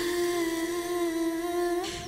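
A woman humming one long held note, steady in pitch and lifting slightly just before it stops.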